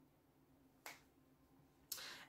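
Near silence, broken by a single short, faint click about a second in.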